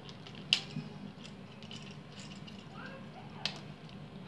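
Two sharp plastic clicks, one about half a second in and a smaller one near the end, from a double light switch's push-in wire terminals being released as the wires are pulled out; quiet between them.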